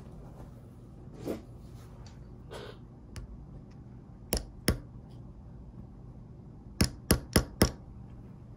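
Sharp clicks and taps from handling a metal Mini 4WD wheel pusher tool: two a little apart about halfway through, then four quick ones near the end.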